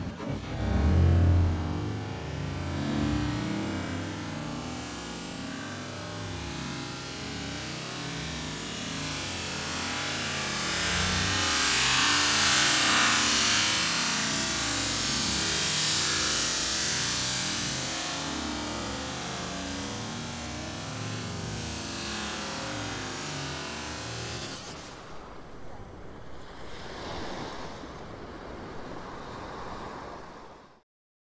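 Ocean waves washing onto the shore, a steady rush that swells into a long surge in the middle and then eases. There is a low thump about a second in.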